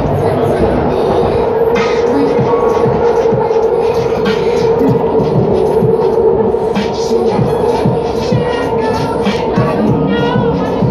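Music with a steady beat playing loudly, over the steady hum of a moving train carriage.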